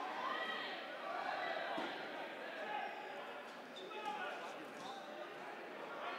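Faint, echoing shouts of dodgeball players calling to each other across a gym court, with a few balls bouncing on the hard floor.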